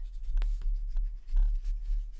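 Metal ball tool rubbing and pressing on small die-cut cardstock flowers laid on a foam mat, cupping the petals, with low bumps from hands on the table.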